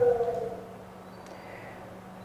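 A man's voice through a handheld microphone trails off on a drawn-out, falling syllable, then a pause of faint room tone with a low steady hum.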